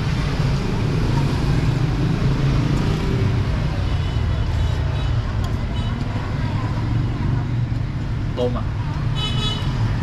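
Steady road traffic rumbling past a roadside stall. A brief high-pitched tone, such as a horn toot, sounds about nine seconds in.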